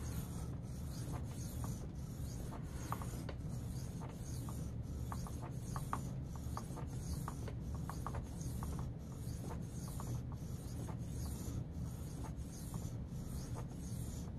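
Steel knife edge being drawn freehand across a Venev diamond sharpening stone, a soft scratchy rubbing in a steady run of back-and-forth strokes.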